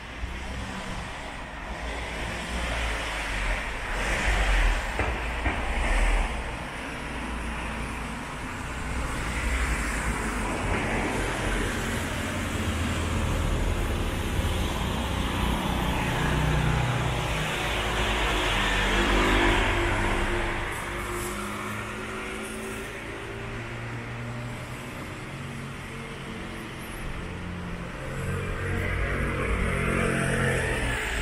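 City street traffic: cars passing one after another in swells, with a vehicle engine's low hum from about halfway through.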